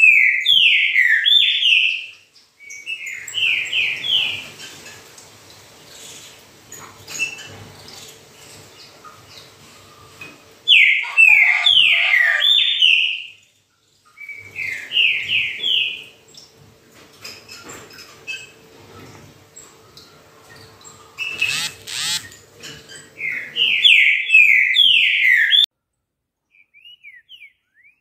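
A caged trinca-ferro (green-winged saltator) singing loud phrases, five in all, each a quick run of four or five downslurred whistled notes, with pauses of several seconds between them. A sharp click sounds about three quarters of the way through.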